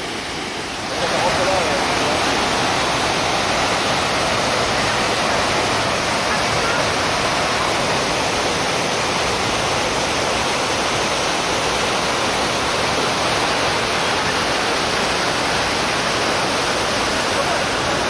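Tegenungan Waterfall pouring into its plunge pool, heard close up: a loud, steady, even rush of falling water.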